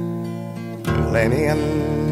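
Acoustic guitar accompaniment to a Scottish folk song: a chord rings on and fades, a fresh strum comes in just under a second in, and a man's singing voice enters on the next line soon after.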